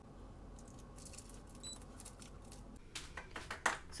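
Quiet room tone with scattered soft clicks and taps, growing louder and more frequent in the last second as hands take hold of a heat press.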